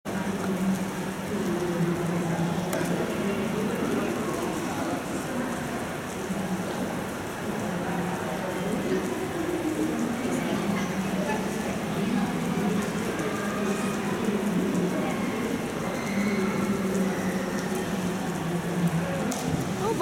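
Steady rain-like hiss of water in an indoor diving pool hall, with faint echoing voices in the background. A diver's splash into the pool comes near the end.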